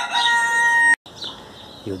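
Rooster crowing, its long held final note cut off abruptly about a second in.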